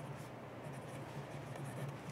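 Pen scratching faintly on paper, writing a signature in short strokes, over a steady low room hum.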